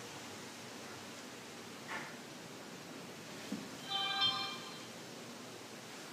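Steady low hiss of a quiet empty room, with a faint click a little after three seconds and a brief tone of several pitches held together for under a second about four seconds in.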